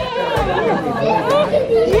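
Several voices talking over one another, a busy mix of chatter.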